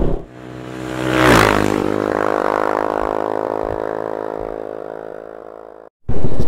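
Intro sound effect: a buzzing tone rises with a whoosh that peaks about a second in, then holds steady and slowly fades before cutting off just before the end.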